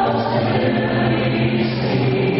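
Choral music: a choir singing long, held notes.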